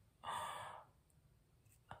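A woman's audible sigh, one breathy exhale lasting about half a second, followed by a brief click near the end.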